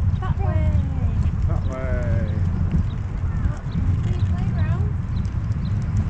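A steady low rumble, with faint, indistinct voices rising and falling in pitch over it.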